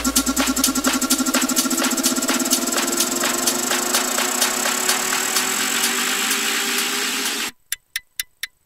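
Electronic dance music from a UK garage and bass house mix: a build-up of fast, dense pulses with a slowly rising synth tone. Near the end the music cuts out abruptly.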